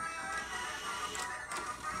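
Tabletop toy claw machine playing its electronic tune while the claw is being steered, a steady tinny melody.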